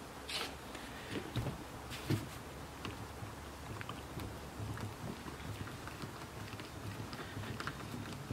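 Hand screwdriver driving a pointed self-tapping screw into the plastic of a compost digester cone, faint irregular clicks and scrapes as the screw cuts its own way into the plastic.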